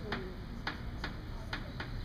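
Chalk on a blackboard while numbers are written: about five sharp taps and clicks of the chalk against the board.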